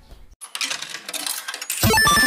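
Sound effects of an animated logo intro: a sound that comes in about half a second in, then a loud hit near the end as electronic intro music starts.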